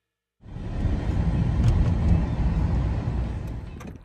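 Steady low road rumble of a car driving along, starting abruptly about half a second in.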